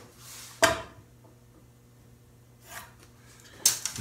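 Hand tools handled on a wooden workbench: a short rustle, then one sharp knock as a tool is set down on the wood about half a second in, and a brief clatter near the end as another tool is picked up.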